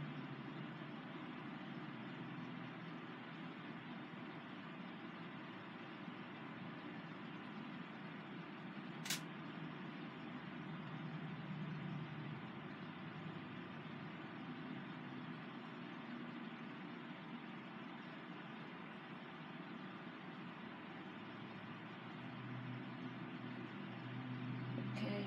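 Steady, low background noise with no voice, broken by a single sharp click about nine seconds in.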